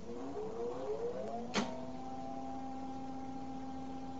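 Electrical whine from the boomer's high-voltage capacitor bank as it is switched on to charge, several tones rising in pitch together for about two seconds. A sharp click comes about a second and a half in, and after it the whine holds a steady pitch.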